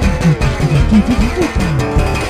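Electric guitar and electronic drums playing together: quick guitar notes that bend and slide up and down in pitch over a steady drum beat, with cymbals.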